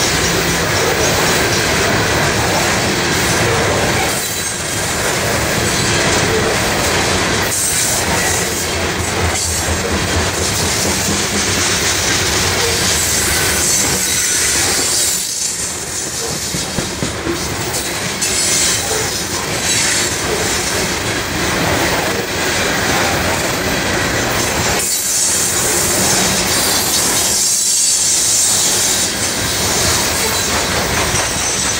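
A freight train's open-top hopper cars rolling past close by: steel wheels on the rails make a loud, continuous rumble and rattle, with a few brief dips in level.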